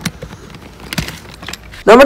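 A few sharp metallic clicks from a stainless steel idiyappam (string-hopper) press as its threaded lid is fitted onto the ice-cream-filled cylinder. A man's voice starts loudly near the end.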